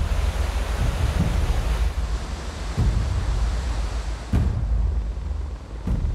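Loud rushing floodwater with a deep rumble underneath, broken by three heavy booms in the second half.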